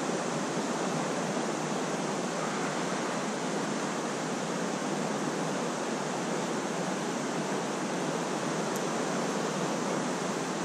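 River current flowing past, a steady, even rush of water with no breaks.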